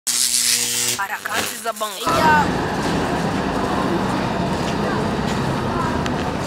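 A brief buzzing tone with hiss, then about a second of warbling, voice-like glides. From about two seconds in, a steady outdoor background hum of noise with faint distant voices.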